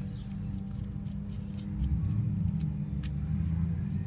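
A steady low hum, getting louder about two seconds in, with scattered faint light clicks as a nut and spacers are handled and threaded onto a bump steer tie-rod end by hand.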